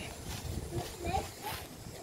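Quiet outdoor background with a low rumble and faint, distant voices about half a second to a second in.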